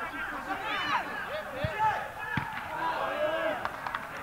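Footballers shouting and calling on the pitch, with two sharp thuds of the ball being kicked, about one and a half and two and a half seconds in.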